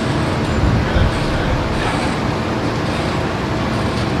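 Steady room noise of a large hall, an even low rumble and hiss without distinct events.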